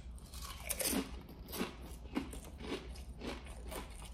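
A person biting into and chewing a mouthful of kettle-cooked potato chips topped with a pickled pig lip: a steady run of crisp crunches, about three a second.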